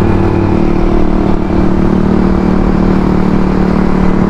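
Yamaha motor scooter's engine running at a steady cruise of about 44 km/h, heard from the rider's seat as an even hum with road and wind rumble under it.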